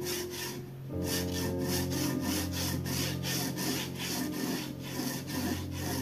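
Graphite pencil scratching across watercolour paper in quick back-and-forth sketching strokes, about four a second, with soft background music underneath.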